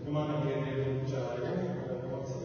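Chant-like vocal: a voice holding long, low notes that shift in pitch, without clear words.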